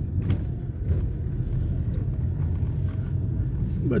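A car driving along a road, heard from inside its cabin: a steady low rumble of engine and tyre noise.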